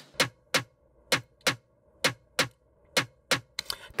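A drum sample loop playing back: eight short, sharp percussion hits in pairs about a third of a second apart, each pair coming back a little under once a second.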